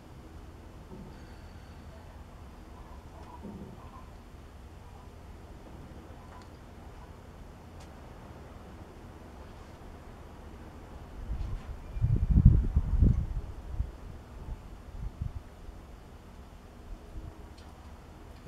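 A low, steady rumble of wind on the microphone, rising to a louder gust of rumbling from about eleven to fourteen seconds in, over the faint dabbing of a basting brush spreading barbecue sauce on pork ribs.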